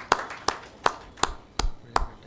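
A small audience applauding, with one person's hand claps standing out at an even pace of nearly three a second while the rest of the clapping thins out and dies away near the end.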